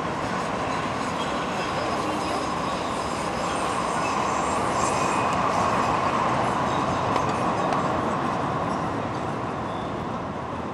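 A street-running light-rail train passing below, its rumble swelling to a peak about halfway through and then fading, with faint high-pitched wheel squeal.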